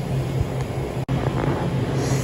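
Steady low mechanical hum of a shop interior, with a soft noise bed, broken by a sudden split-second dropout about halfway through.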